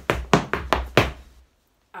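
Irish dance hard shoes striking a vinyl floor mat in a quick run of about five sharp clacks over the first second, the beats of a hornpipe step, then stopping.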